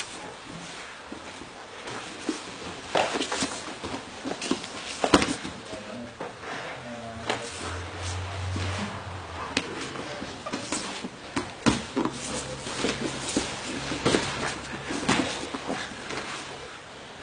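Two grapplers rolling on a mat: irregular scuffs, sharp slaps and knocks of bodies and hands against the mat.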